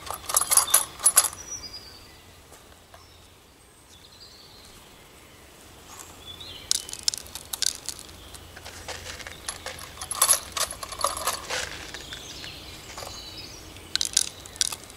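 Light clicking and rattling from a homemade plastic-tube seed planter as it is pushed into the soil and bean seeds are dropped through its funnel. There is a short burst at the start, then a longer run of clicks from about seven to twelve seconds in.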